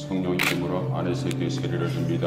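Church music with steady held low notes and singing voices; the low note steps down in pitch a little under a second in, and a brief hiss comes about half a second in.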